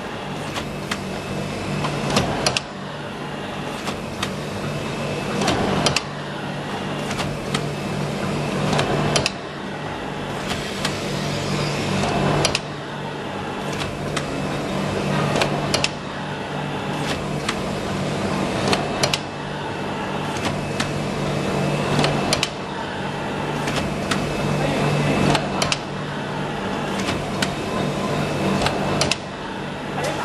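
Automatic cotton swab machine running: a steady motor hum under fast, dense clicking and clattering from the swab conveyor and mechanism. The noise runs in a repeating cycle, a sharp clack and a sudden drop in level about every three and a half seconds, after which it builds up again.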